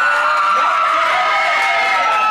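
A small crowd of young people in a room screaming and cheering, several high voices holding long yells at once.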